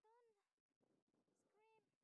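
Near silence, with two faint short high-pitched calls: one at the very start and one about one and a half seconds in.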